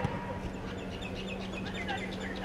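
Small birds chirping in a quick series of short high notes over a low steady hum.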